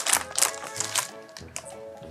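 Clear plastic bag crinkling in the hands as a homemade protein bar is taken out, with a few short crackles, over background music.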